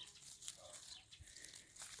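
Near silence with faint, scattered rustling and small clicks of leaves and stems as a hand works through a climbing vine, breaking off green shoots.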